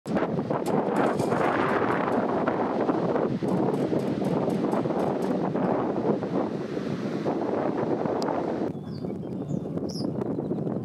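Wind buffeting the microphone, a rushing noise that rises and falls in gusts and drops away about nine seconds in.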